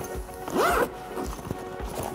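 The RYU Locker Pack Lux backpack's side-access zipper is pulled open in one quick rising zip about half a second in. Background music with a steady beat plays under it.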